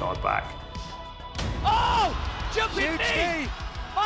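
Background music with a steady bass, and a man's excited shouting voice coming in about a third of the way in, rising and falling in pitch.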